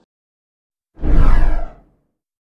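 A whoosh transition sound effect with a deep rumble underneath, about a second long, starting about a second in and sweeping downward in pitch.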